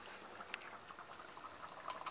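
Faint bubbling of a tomato and meat stew simmering in a pot, with a light tap about half a second in.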